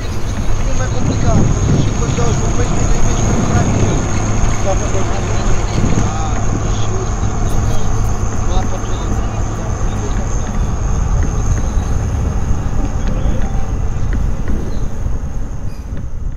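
Layered field-recording collage: a dense low rumble with indistinct voices, under a steady high-pitched whine.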